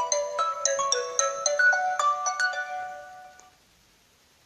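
Mobile phone ringtone playing a quick melody of bright, chiming notes: an incoming call. It fades out about three and a half seconds in, as the call is picked up.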